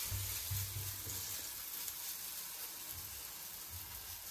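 Chana dal fritter batter shallow-frying in a little oil in a frying pan: a steady sizzling hiss as a second fritter is laid in.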